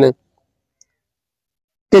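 Near silence: a pause in a man's talk, dead quiet, with one faint tick a little under a second in.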